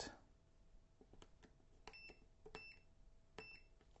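Protek 6300 digital multimeter giving three short, faint high beeps as its buttons are pressed to select continuity mode, with soft clicks of the buttons in between.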